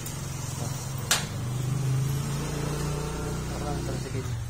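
A steady low engine hum, with a single sharp knock about a second in.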